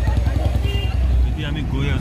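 Busy street ambience: many people talking at once over a steady low rumble of motorbike and traffic noise. About a second and a half in, the sound changes to a different low rumble as a new voice starts.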